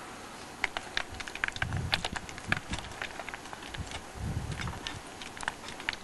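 Rapid, irregular sharp clicks and small clatters, with a few low thuds in between.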